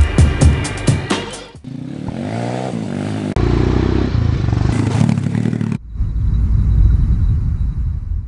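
Music with a beat, cut off about one and a half seconds in by a pit bike engine revving up, its pitch rising, then running hard. Near six seconds there is another abrupt cut to a lower engine rumble that fades out at the end.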